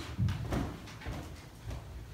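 Soft low thumps and shuffling of people moving about on a wooden floor, with the loudest thump about a quarter second in.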